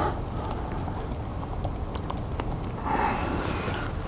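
Laptop keyboard being typed on: a run of quick, light key clicks. A brief soft rushing noise comes about three seconds in.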